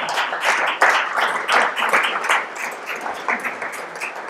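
Audience applauding, the claps thinning out and getting quieter toward the end.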